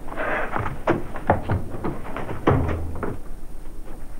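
A short rustle, then a handful of sharp knocks and thumps. The loudest comes about two and a half seconds in, with a low thud.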